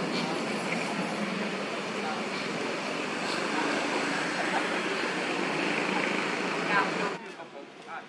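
Steady outdoor background din with indistinct voices, which drops away abruptly about seven seconds in.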